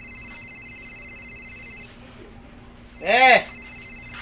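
Mobile phone ringing with an electronic ringtone: a steady high ring for about two seconds, a short pause, then ringing again. About three seconds in, a loud short sound swoops up and then down in pitch over the ring.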